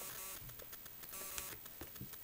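Faint handling sounds of an iPad: a few light clicks and taps from fingers on the tablet and its home button, over a steady low hiss.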